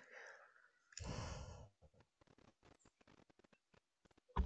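Near silence, broken about a second in by a person sighing once, followed by a few faint clicks.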